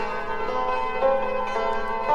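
Persian santur (hammered dulcimer) played solo in dastgah Homayun: a steady run of quickly struck notes, each ringing on under the next.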